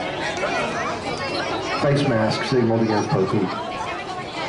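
Spectators chattering, several voices talking over one another, with a nearer, louder voice from about two seconds in.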